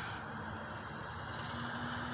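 Quiet, steady background hum and noise, with a faint steady tone coming in about halfway through.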